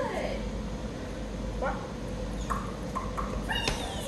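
A dog whining in a few short, thin glides of pitch, some rising and some falling, over a steady background hum.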